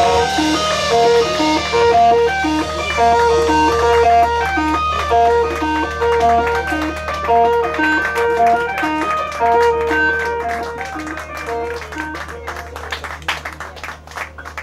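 Live rock band music: an electric guitar playing a repeating picked melody over a steady low drone, the sound dying away over the last few seconds with a few scattered clicks.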